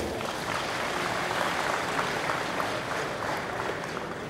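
Audience applauding, fading slightly near the end.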